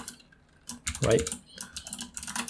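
Keys being pressed on a computer keyboard to enter editor commands: a few separate clicks, then a quicker run of keystrokes near the end.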